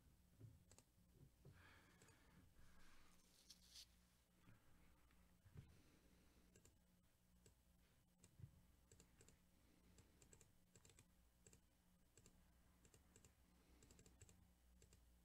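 Near silence with faint, scattered clicks of a computer mouse and keyboard, several in quick runs in the second half, as a list is copied and pasted into a spreadsheet.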